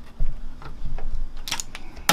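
Handling of a computer power supply unit's metal casing: a low bump, then scattered small clicks and ticks, with a quick cluster of sharper clicks near the end.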